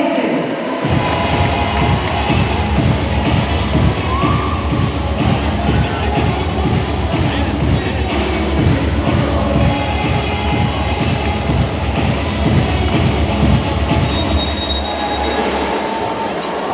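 Volleyball arena crowd making a loud, dense low rumble of rapid banging and noise after a point, starting about a second in and dropping away near the end. A short high whistle sounds near the end.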